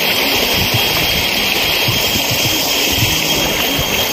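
Shallow stream running over stones: a loud, steady rush of water, with irregular low knocks underneath.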